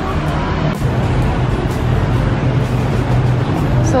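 Street traffic: a motor vehicle running close by, a steady low engine hum over road noise.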